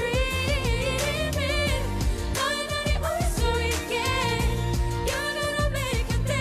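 Pop song performed live: a woman singing long, wavering notes over a band accompaniment with bass and drums.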